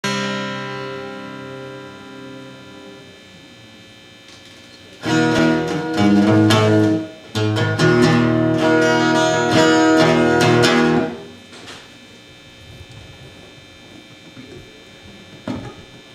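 Acoustic guitar strummed. A chord rings out and fades over the first few seconds, then loud strummed chords run from about five to eleven seconds, followed by quieter playing with a couple of sharp strums near the end.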